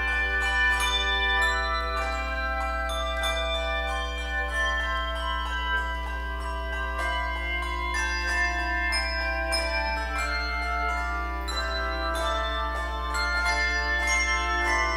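Handbell choir playing a piece: many tuned handbells rung in turn, each note ringing on and overlapping the next in a steady flow of chords and melody.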